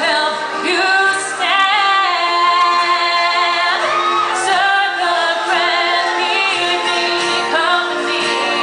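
Live acoustic song: a woman singing lead, her voice gliding between held notes, over several strummed acoustic guitars.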